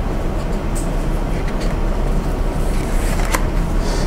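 A steady low rumble of background noise, with a few faint clicks and one sharper click about three seconds in.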